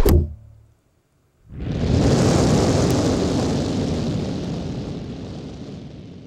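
Logo-animation sound effects: a ringing hit dies away in the first half-second. After a second of silence, a dense rushing swell rises quickly and fades slowly over about five seconds.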